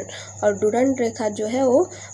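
A woman speaking Hindi in a steady narrating voice, with a thin high-pitched trill running steadily underneath.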